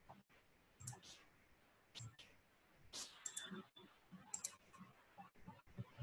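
Near silence: room tone with a few faint, scattered clicks about a second apart.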